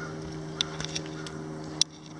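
Steady low machine hum, like a motor running, with a few light clicks over it and one sharp click near the end.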